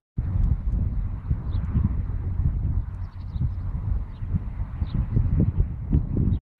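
Wind buffeting the microphone: an irregular, gusting low rumble.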